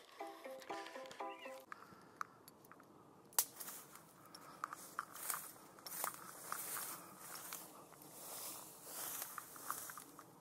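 A quick run of short pitched notes lasting about a second and a half, then a steady rustling hiss with many scattered clicks from moving about outdoors.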